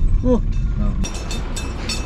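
Car running on a hill road, heard from inside the cabin: a steady low rumble of engine and road. About a second in, rapid high metallic jingling joins it.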